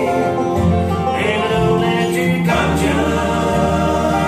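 Live bluegrass band playing: banjo, mandolin, acoustic guitar, upright bass and dobro, with singing over a steady, stepping bass line.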